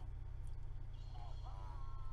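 Steady low hum, with a faint, high-pitched voice coming in about a second in, its pitch rising and then holding.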